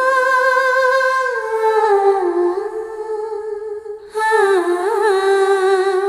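Background music: a voice humming a slow melody in long held notes with gentle glides between them, dropping out briefly about four seconds in.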